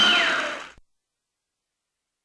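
A voice over a noisy background fades out and cuts off about three-quarters of a second in, followed by dead silence.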